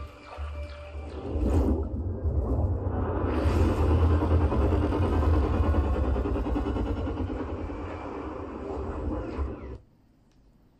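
DTS-HD Master Audio demo trailer soundtrack: cinematic music and effects over a deep bass rumble, swelling about a second in and then slowly easing off. It cuts off suddenly just before the end as playback is stopped.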